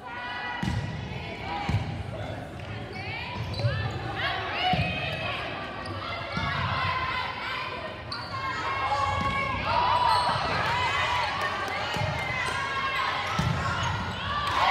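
Indoor volleyball rally on a hardwood gym floor: the ball thumps on serve and hits about eight times, sneakers squeak on the floor, and players and spectators call out, all in an echoing hall.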